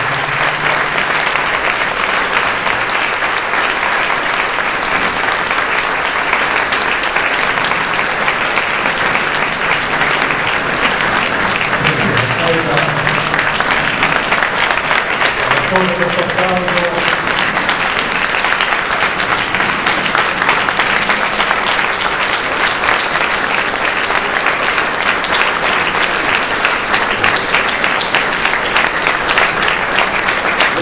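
A large audience applauding steadily and at length at the close of a speech, with a few voices talking briefly over the clapping now and then.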